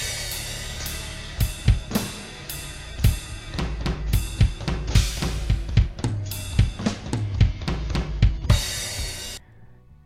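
Drum kit played live through a fast gospel-style chop: rapid runs of kick, snare and hi-hat strokes punctuated by cymbal crashes, over a steady low bass. It cuts off abruptly just before the end.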